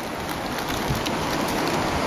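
A steady rushing noise that holds level throughout, with no clear rhythm or single strokes.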